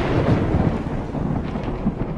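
A deep, thunder-like rumbling boom sound effect, dying away slowly after a sudden blast.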